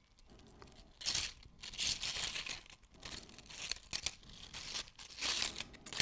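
Dry tortilla chips rustling and scraping against one another as fingers sort through a handful of them, in irregular bursts after a quiet first second.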